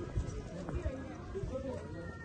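Footsteps on a cobblestone lane, a few short knocks, with people's voices in the background.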